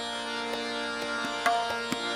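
Hindustani classical accompaniment without voice: a steady tanpura drone and held harmonium notes, with a few light strokes about every half second, between the vocalist's phrases of a khayal in Raga Bhoopali.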